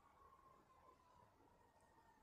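Near silence: faint background, with a thin steady tone that slowly falls in pitch.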